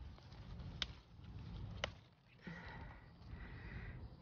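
Quiet background with two short, sharp clicks about a second apart, then a faint soft hiss.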